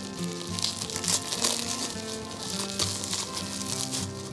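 Plastic bubble wrap crinkling irregularly as hands unwrap a jar, over steady background music with held notes.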